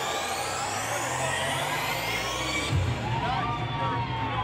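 Electronic dance music from a DJ set: a rising sweep builds through the first part, then a heavy bass comes in a little under three seconds in as the track drops.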